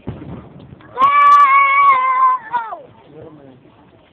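A person lets out a loud, long, high-pitched yell lasting about a second and a half, its pitch dropping away at the end.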